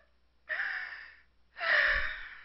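Two breathy gasps by a person, the first about half a second in and a louder one near the end.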